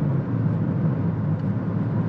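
Cabin noise of a Honda ZR-V full hybrid gently gaining speed: a steady road and tyre rumble with a low hum, the petrol engine hardly heard.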